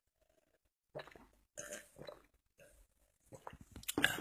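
A person drinking cream soda from a glass: a few quiet sips and swallows, starting about a second in.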